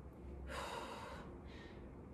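A woman's heavy exhale under exertion from lunge exercise, one breathy rush of air about half a second in that fades within a second.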